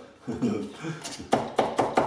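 A metal knife scraping and tapping in a plastic tub of wet grout, then a man's short chuckle in a few quick breaths near the end.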